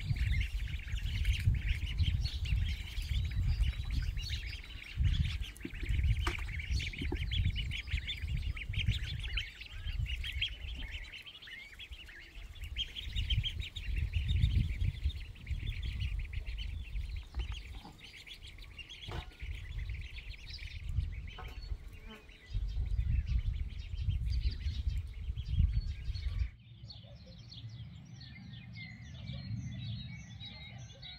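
Many birds chirping densely and continuously, over irregular gusts of wind buffeting the microphone. Near the end the wind rumble stops abruptly and the chirping thins to quieter, scattered birdsong.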